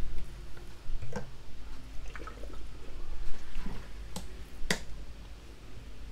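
A few sharp clicks in a pause, the loudest about three-quarters of the way through, over a steady low hum.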